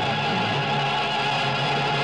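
Closing music of a 1970s Dr Pepper television commercial jingle, held steady on sustained notes over a bass line.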